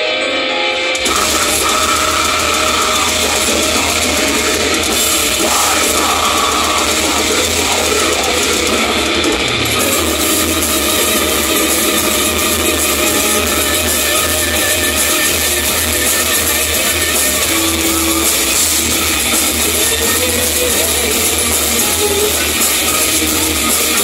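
Black metal band playing live: a thinner keyboard-led passage gives way, about a second in, to the full band with distorted guitars and drums, loud and dense throughout.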